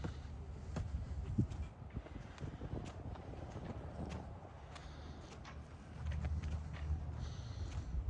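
Footsteps on a concrete path at a walking pace, about two steps a second, with a low rumble that swells near the end.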